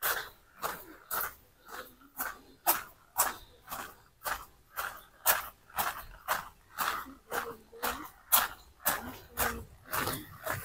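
Footsteps on a concrete path at a steady walking pace, about two steps a second.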